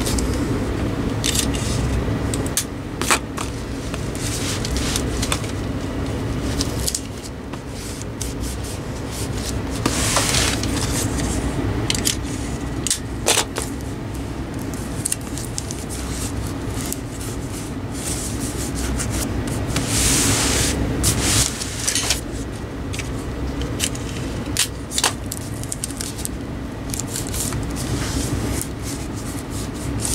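Clear adhesive tape pulled off a small handheld dispenser and pressed onto a cardboard box, with two long tearing hisses about ten and twenty seconds in. Sharp clicks as the tape is cut on the dispenser, and hands rubbing the tape down on the cardboard.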